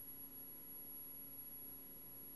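Quiet pause with only the recording's background: a faint steady hum and hiss, with a thin high whine running under it.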